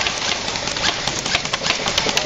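Rapid, irregular clicking and rattling from airsoft guns firing over a steady background noise.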